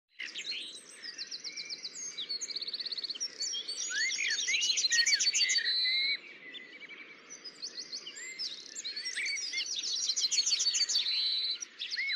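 Several birds chirping and singing at once, with quick trills and rising and falling whistled notes; it goes quieter for a couple of seconds about halfway through, then picks up again.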